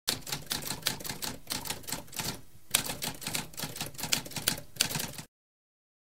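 Typewriter sound effect: keys clacking in rapid succession, with a short break about two and a half seconds in, then stopping abruptly a little after five seconds.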